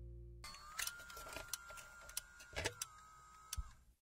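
The last of the music fades out, then a faint steady high whine with several sharp clicks, as from a small motor-driven mechanism. It stops abruptly just before the end.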